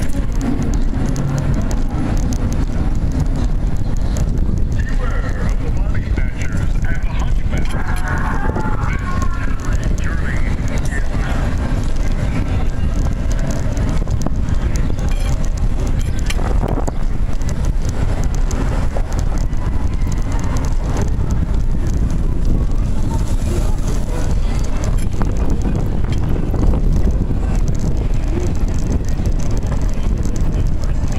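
Wind buffeting the microphone over the rolling rumble of a wheelchair travelling fast downhill on pavement: a steady, loud low noise throughout.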